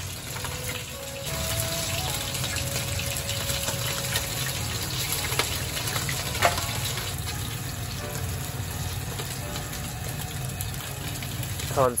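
Pieces of starch-coated tilefish frying in oil at 180 degrees in a steel frying pan: a steady sizzle and bubbling, with a couple of sharp crackles around the middle.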